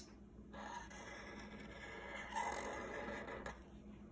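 Faint scratching of a black marker tip drawing a circle on paper, a little louder in the second half.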